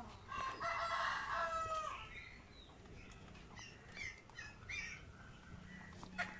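A rooster crowing once, a single pitched call lasting about a second and a half, followed by a few short calls a couple of seconds later.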